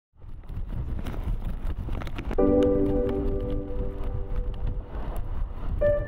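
Wind buffeting the microphone, a steady low rumble, with a sustained musical tone entering about two seconds in and holding for a couple of seconds, and another tone starting near the end.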